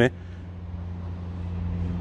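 A low steady hum with an even rush of noise, like road traffic, growing slightly louder toward the end.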